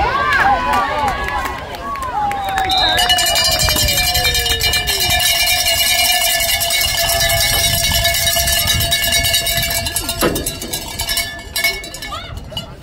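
Spectators cheering and shouting, then a bell shaken rapidly in the stands for about eight seconds, starting about three seconds in, a steady metallic ringing over the crowd.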